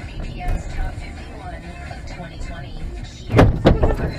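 A car's road and engine noise picked up by a dash camera, with faint talk and music under it. Two loud thumps come close together near the end.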